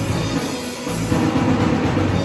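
Live rock band playing an original song: electric guitars, electric bass and a drum kit together. The low end thins out for a moment just under a second in, then the full band comes back in louder.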